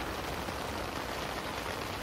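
Steady rain on a tent, an even hiss without breaks.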